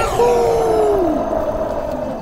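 A cartoon character's long yell that slides steadily down in pitch over about a second, over a rushing whoosh of flying through the air that slowly fades.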